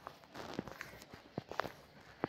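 A few faint, irregular clicks and taps against quiet room noise.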